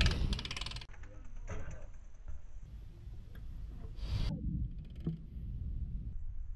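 BMX bike tyres rolling on concrete, with low wind rumble on the microphone. A rapid mechanical ticking stops sharply about a second in, and a few light knocks follow.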